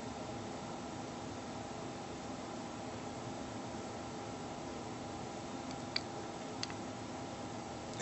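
Steady low room noise: an even hiss with a faint hum, broken by two faint clicks about six seconds in.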